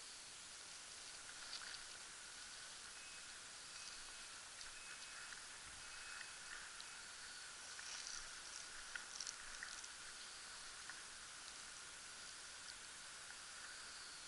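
Faint steady hiss with soft, scattered crackles and ticks of footsteps on gravel and dry leaves. A few faint short high tones come a few seconds in.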